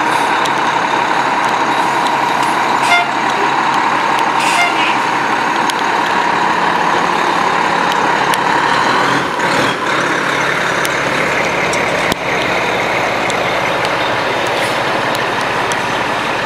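Fire apparatus diesel engines running steadily close by, a constant drone with a steady mid-pitched hum over it.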